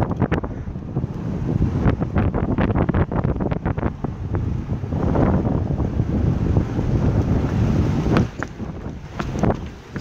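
Wind buffeting a phone microphone while it moves fast, a dense low rumble with many scattered clicks and knocks.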